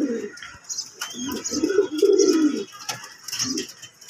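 Fantail pigeons cooing: a few low, warbling coos, the longest between about one and three seconds in, with faint high-pitched chirping behind them.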